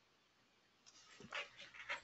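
Near silence, then about a second in a few short, faint breaths close to the microphone.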